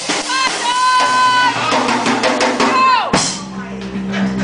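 Live blues band playing with a drum kit. A high held note bends up and down, then drops sharply about three seconds in, and a lower steady note follows near the end.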